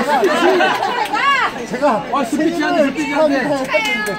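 Several excited voices talking, laughing and calling out over one another, with a high voice squealing up and down about a second in.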